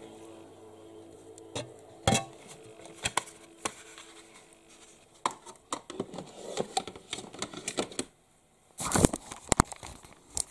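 Handling noise: scattered clicks, knocks and rustles of objects being picked up and moved close to the microphone, with a faint steady hum through the first half and a louder burst of knocks near the end.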